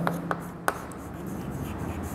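Chalk writing on a chalkboard: soft scratching with a few sharp taps as strokes land, the sharpest about two-thirds of a second in.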